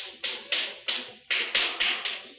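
Chalk writing on a blackboard: a quick run of about seven sharp tapping strokes, each fading away, as characters are written.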